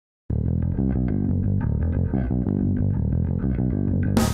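Opening of a symphonic goth rock song: a bass guitar playing low plucked notes on its own, starting a moment in.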